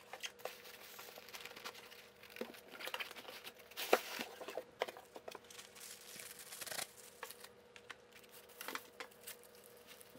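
Plastic wrapping and packing foam crinkling and rustling as a plastic-wrapped tabletop melting furnace is handled and pulled out of its cardboard box, with scattered small knocks and a sharper crackle about four seconds in.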